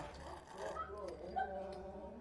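Indistinct voices talking in the background, with one brief sharp click about one and a half seconds in.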